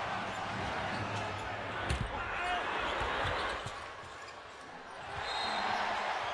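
Arena crowd chatter, with a basketball bouncing a few times on the hardwood court about two to three seconds in.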